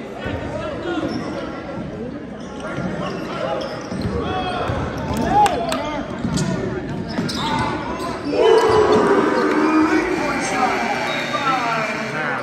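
Basketball bouncing on a hardwood gym floor amid echoing spectator voices in a large hall. About eight and a half seconds in the crowd noise gets louder and stays up.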